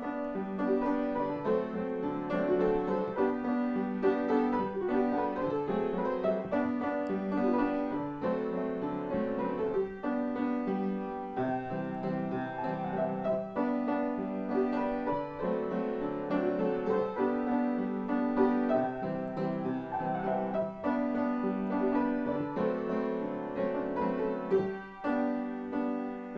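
Instrumental piano music: slow, sustained chords changing about once a second.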